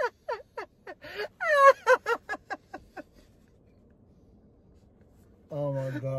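A man's hysterical laughter in short, quick bursts that falls in pitch and dies away into silence about three seconds in. Near the end comes another man's low, drawn-out groan of disgust as he holds a mouthful of canned mackerel.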